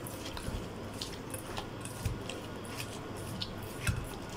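Hands handling wet food pieces in a stainless steel bowl: scattered soft squelches and small clicks against the metal, over a steady low room hum.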